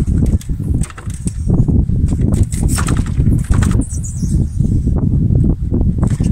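Wind buffeting the microphone as a homemade vertical-axis wind turbine turns, its bicycle-wheel rim running on a skateboard wheel that drives the generator. There is a loud, uneven low rumble with irregular rattling bursts.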